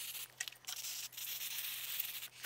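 Aerosol contact cleaner hissing out through its straw nozzle onto the fuse box terminals: a few short broken sprays, then a steadier spray from about a second in.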